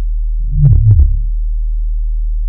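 Electronic intro sting under a company logo: a short synthesized motif of falling low tones topped with thin high blips, starting about half a second in and lasting about a second, over a steady low drone.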